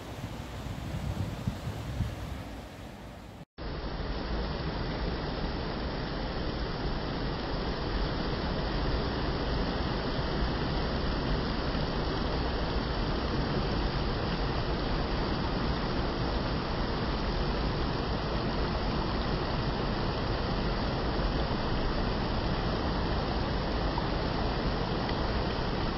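Shallow stream water rushing over a flat, rocky bed in a steady rush. The first few seconds are quieter and gusty, with wind on the microphone, then a sudden cut brings in a louder, even rush of water.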